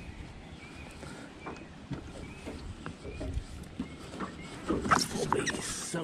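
Light knocks and handling noise of a person moving about in a small boat, with a burst of louder clatter about five seconds in. Faint short chirps repeat in the background.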